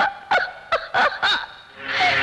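A woman's high-pitched laughter in about five short bursts, each falling in pitch.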